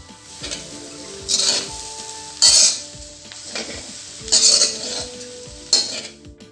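A spatula stirring and scraping cassava pieces around an aluminium kadai, with about four loud scrapes a second or two apart over a low sizzle.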